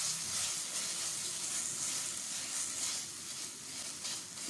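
A ground masala paste with green chillies sizzling steadily as it fries in oil in a stainless steel pressure cooker, stirred with a steel spoon.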